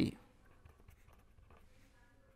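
Pen writing on paper: faint, irregular scratching strokes as words are written out by hand. The last word of a man's speech ends right at the start.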